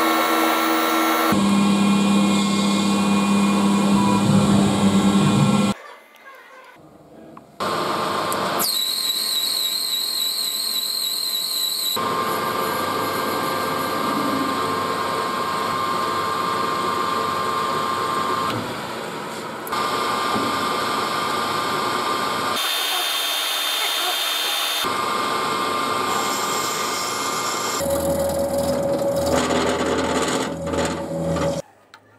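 Lathes running and turning workpieces, heard as a string of short clips that change abruptly at each cut. Each clip has a steady machine hum and whine with cutting noise, and a warbling high whine runs for about three seconds from about nine seconds in.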